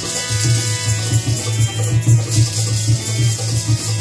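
Harmonium and tabla playing kirtan together: the harmonium's held chord tones run under a steady, fast beat of deep bass drum strokes.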